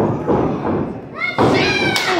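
Thuds on a wrestling ring as one wrestler runs and leaps at another standing on the top turnbuckle, with a sharp impact near the end. Spectators' voices rise in shouts during the second half.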